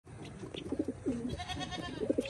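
Domestic pigeon cooing: low coos in short pulsing phrases, with one note held a little longer about a second in.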